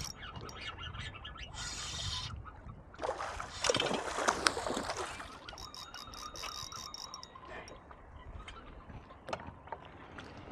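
Water splashing in bursts as a hooked fish is played on a bent rod, then a fishing reel being cranked with a thin whine and light clicking from about halfway through.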